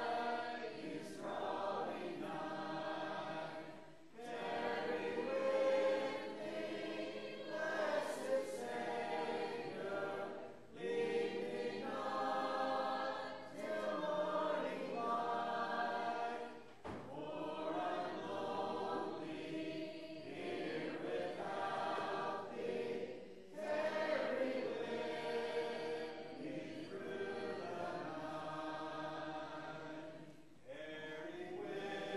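A church congregation singing a hymn together a cappella, many voices without instruments. The singing comes in long phrases with a short pause about every six seconds.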